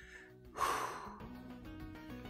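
A single breathy sigh about half a second in, over background music holding sustained low notes.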